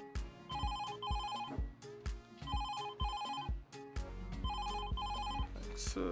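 Phone ringtone: a short electronic melody of high beeping tones that repeats about every two seconds, with a steady low beat under it.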